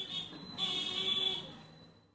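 A shrill, buzzer- or alarm-like tone in the background, lasting about two seconds in two parts, with a louder second part that fades out near the end.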